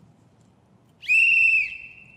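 A sports whistle blown once, about halfway in: a single short, shrill blast of under a second that fades away.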